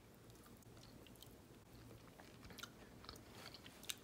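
Faint chewing of a chicken wing: quiet scattered mouth clicks over near silence.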